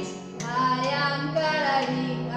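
A woman and a young girl singing a children's song together, with a few hand claps marking the beat.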